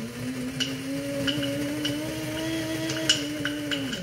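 Electric blade coffee grinder running and grinding almonds. Hard pieces tick against the cup, and the motor's pitch rises slightly. It is switched off at the end and winds down quickly.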